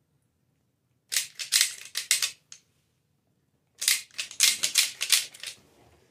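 Thin clear plastic container crinkling and crackling in a toddler's hand. It comes in two bursts of rapid crackles, about a second in and again near four seconds, each lasting about a second and a half.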